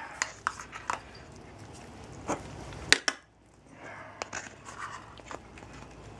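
Scattered sharp clinks and knocks of cat food bowls and cans being handled on a floor, the sharpest about three seconds in.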